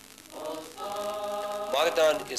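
Small church congregation singing a hymn in unison, in long held notes, with a brief pause between phrases just after the start. A louder voice with changing pitch cuts in near the end.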